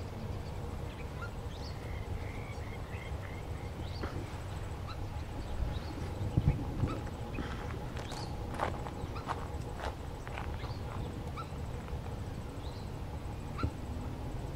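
Lakeside wetland ambience: scattered short bird chirps and calls over a steady low rumble. A louder knock comes a little before the middle, followed by a run of sharp clicks and calls.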